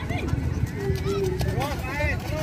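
Children's voices calling and shouting during a youth football match, with several short calls in quick succession near the end. Underneath there is a low rumble and scattered thuds of running feet and the ball on the muddy pitch.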